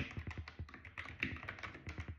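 Typing on a computer keyboard: a rapid, irregular run of faint key clicks.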